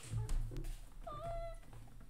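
A domestic cat meowing once, a short call about a second in, over low bumping and rumbling that is loudest near the start.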